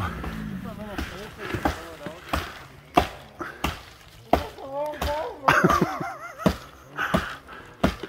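An axe chopping into a tree trunk: about a dozen sharp knocks at an uneven pace, roughly one every two-thirds of a second. Distant voices come through between the strokes.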